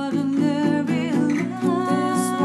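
Acoustic guitar strummed in an even rhythm, with voices singing and humming a melody over it.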